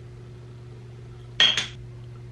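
A short clink of a hard makeup container being handled, about one and a half seconds in, over a low steady hum.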